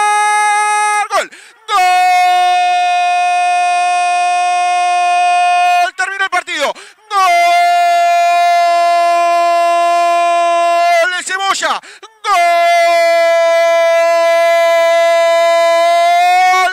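A radio football narrator's long drawn-out shout of "gol", calling a goal. The held note ends about a second in and is followed by three more holds of about four seconds each, each at a steady pitch and separated by short breaths.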